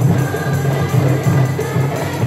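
Marawis ensemble: women singing together over a steady rhythm of frame-style marawis hand drums and deeper seated drums.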